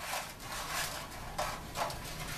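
A spatula scraping and rasping against a metal baking sheet in several short strokes as it is worked under a giant baked cookie to lift it free.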